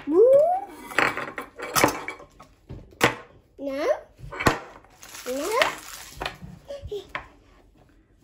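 Hard plastic toy capsules clacking against a table in a few sharp knocks, between a young child's short, wordless rising vocal sounds.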